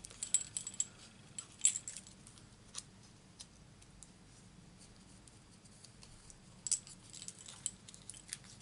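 Small scissors snipping vellum away from a die-cut paper butterfly's antenna: scattered light clicks and snips, with a group in the first couple of seconds and another near the end.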